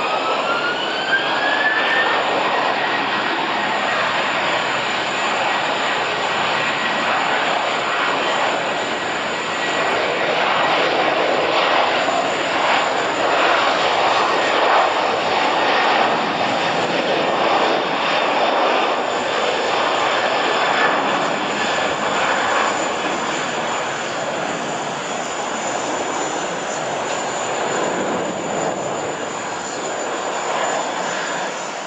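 Airbus A330's twin jet engines spooling up to takeoff power with a rising whine over the first two seconds, then running loud and steady through the takeoff roll. The sound eases a little near the end as the airliner lifts off.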